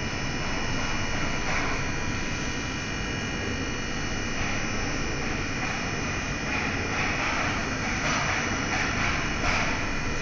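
Electric scissor lift's hydraulic power pack running as the platform rises: a steady motor-and-pump hum with several high steady whining tones, swelling a little louder a few times near the end.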